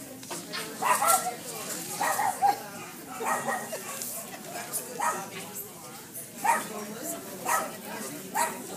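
A papillon, a small toy dog, barking repeatedly: several short, sharp barks spaced roughly a second apart, over the chatter of a crowd.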